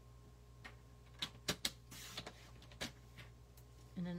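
Paper trimmer cutting a sheet of cardstock: a few sharp clicks about a second in, then a short scraping swish of the blade along its rail, and one more click near the three-second mark.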